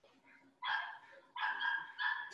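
Two short high-pitched animal cries, the first brief and the second about half a second long.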